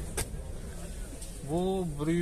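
Low background rumble with a single short click just after the start, then a man's voice begins about one and a half seconds in.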